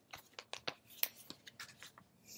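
Paperback book and paper card being handled as the book is opened: a faint, irregular run of small ticks and rustles.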